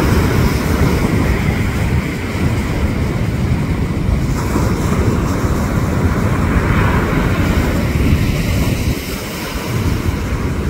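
Surf washing up the beach with steady wind rumble on the microphone, dipping briefly near the end.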